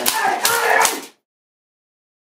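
A man's voice and scuffling knocks that cut off abruptly about a second in, followed by dead silence where the audio track goes mute.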